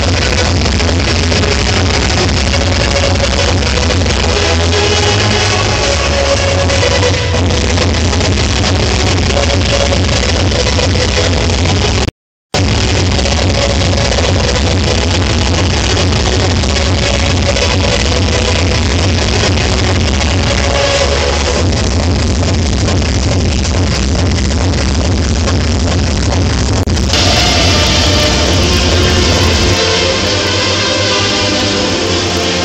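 Loud electronic dance music from a DJ set, with a heavy, steady bass. The sound cuts out completely for a moment about twelve seconds in, and turns brighter near the end.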